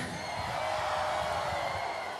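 Large concert crowd cheering: a steady wash of many voices with no single sound on top.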